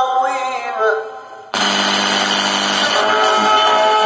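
Radio broadcast playing through the Sharp GF-9696Z boombox's speakers: singing fades out over the first second, then after a brief dip a loud band of music cuts in abruptly about a second and a half in and carries on steadily.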